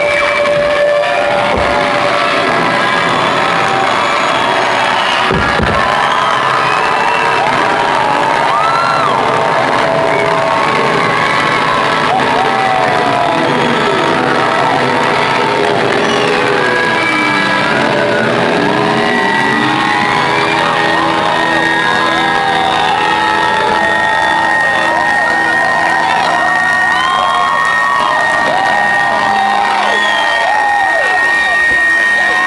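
Live rock band playing out the end of a song, with long held notes ringing over it, while a packed audience cheers, whoops and shouts throughout. The recording is loud and harsh.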